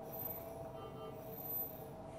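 Faint background music of soft, sustained tones.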